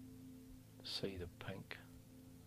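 Soft meditation background music with steady low held tones, and about a second in a man's quiet voice speaks briefly.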